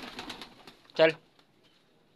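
A pigeon bathing in a tub of water: a brief burst of splashing in the first half-second, then a single short spoken word.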